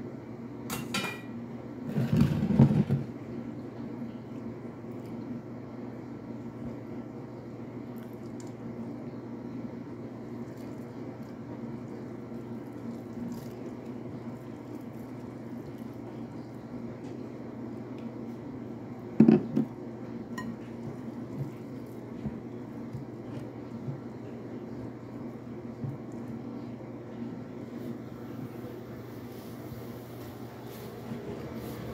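Hands mixing flour and warm water into pizza dough in a large glass bowl: soft handling sounds over a steady low hum, with two louder knocks against the glass, one about two seconds in and one near the twenty-second mark.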